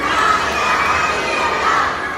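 A group of children shouting together in a loud cheer, dying away near the end.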